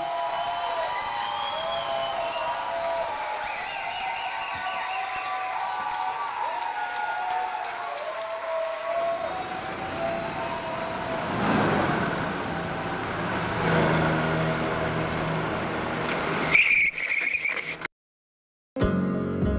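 Road traffic in a residential street: a car passes, swelling and fading, about halfway through, and another a couple of seconds later, then a brief high squeal near the end before the sound cuts off. Before the traffic, several steady held tones shift in pitch in steps.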